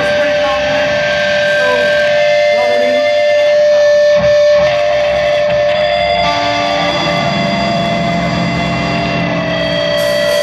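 Live hardcore band's amplified electric guitars opening a song with long, held, ringing notes.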